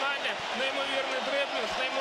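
A man's voice commentating on football in Ukrainian, talking steadily through the whole moment.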